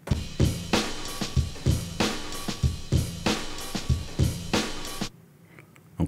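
A recorded drum beat plays as the source audio being sampled into an Akai MPC2000XL, then cuts off abruptly about five seconds in.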